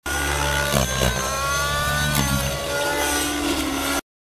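GAUI NX7 radio-controlled helicopter in 3D flight: a steady whine of its rotor and drive, whose pitch dips and recovers a couple of times as the helicopter swings through manoeuvres.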